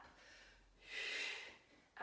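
A woman's single audible breath, a short breathy huff out, about a second in, from the effort of exercising.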